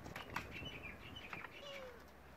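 Faint light clicks and scuffling of kittens moving about inside a plastic crate, with faint high chirps and a short falling squeak near the end.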